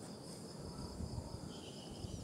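Faint, steady high-pitched insect chirring, with a second, lower insect buzz coming in about one and a half seconds in. Low, uneven rumbling of wind on the microphone runs underneath.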